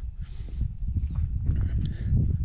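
Low, uneven rumble of wind buffeting the camera microphone, with scattered footstep knocks on dirt ground as the camera carrier walks.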